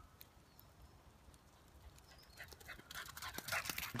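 A dog panting and moving on a wet track, faint at first and growing louder over the last second or two as irregular short clicks and rustles.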